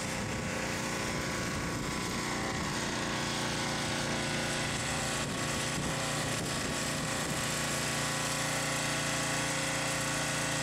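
Gas-engine pressure washer running steadily at constant speed while its wand sprays water onto concrete.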